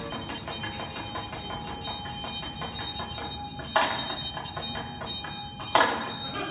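Metal bells ringing with a steady mix of many small strikes, and two louder strikes that ring on, about four seconds in and again near the end.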